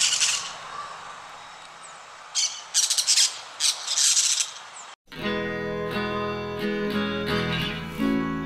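Parakeet screeches in several short, harsh bursts for about five seconds, then a sudden cut to acoustic guitar music with ringing, sustained notes.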